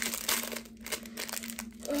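Small clear plastic packaging bag crinkling and crackling irregularly as it is handled in the hands.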